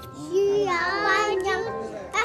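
A child's voice singing a short drawn-out line, starting about a third of a second in and lasting over a second, with music playing faintly underneath.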